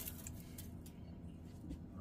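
Quiet kitchen room tone with a faint steady low hum.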